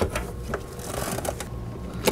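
Half-inch ratchet clicking faintly as it works an oxygen sensor socket on a long extension, with a few light clicks of metal on metal, tightening a new oxygen sensor into the exhaust manifold.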